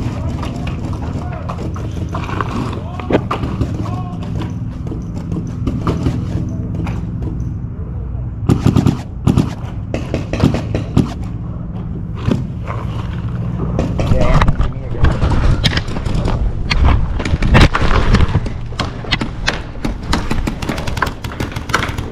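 Paintball markers firing, sharp pops in rapid strings that grow thicker from about eight seconds in and again in the second half, with players shouting.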